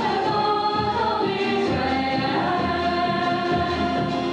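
Choir of young female voices singing together, accompanied by acoustic guitar. The sung piece falls between the first and second readings of the Mass, the place of the responsorial psalm.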